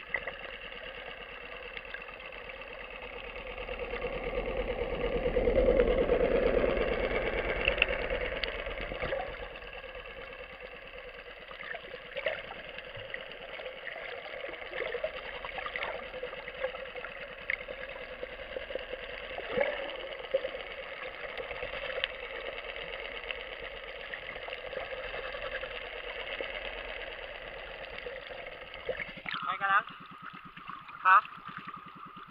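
A boat's motor heard underwater: a steady, muffled hum that swells to its loudest about six seconds in and then eases back. Scattered sharp clicks run through it.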